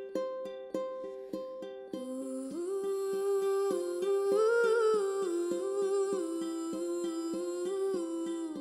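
Gentle ukulele music: a ukulele plucked in a steady repeating pattern, joined about two seconds in by a soft hummed melody that rises and falls.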